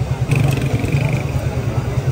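An engine running steadily close by with a rapid low throb, under background chatter. A single high-pitched tone sounds for nearly a second, starting about a third of a second in.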